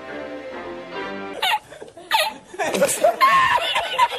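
Background music, cut off about a second and a half in by a man's hearty laughter from a meme reaction clip, in breathless bursts with gaps between them.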